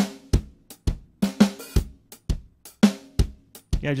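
Sampled acoustic drum kit from the Toontrack Americana EZX library playing a MIDI groove of kick, snare and cymbal hits at a steady rhythm. The drums sound dry, with little room ambience and short tails, as they were recorded in a small room.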